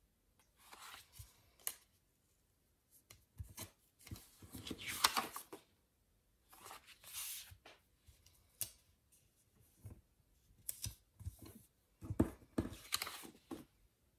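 Paper rustling and crinkling from handling planner pages and stickers, in short irregular bursts with a few sharp clicks.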